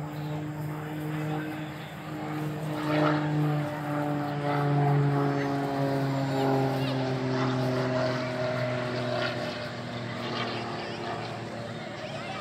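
Propeller aerobatic plane flying overhead: a steady engine drone whose pitch slowly falls as it passes, growing weaker after about nine seconds.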